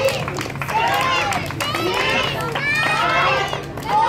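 A crowd of onlookers, many of them children, calling out and shouting in loud overlapping voices.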